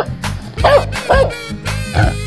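Upbeat background music with a steady beat, over which a dog sound effect gives two short barks about two-thirds of a second and just over a second in.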